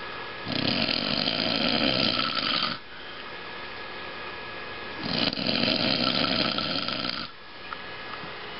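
A sleeping man snoring loudly and harshly: two long snores of about two seconds each, roughly four and a half seconds apart.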